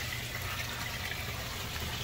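Steady trickle of water flowing through the aquaponics fish tank and settling tank plumbing, with a low steady hum underneath.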